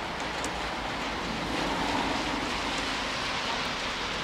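Steady hiss of traffic on a wet, slushy street, swelling a little around the middle.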